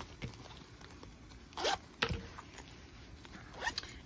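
Zipper on a fabric needle-case pouch being worked: one short rasp about one and a half seconds in, then a sharp click, and a few small handling noises near the end.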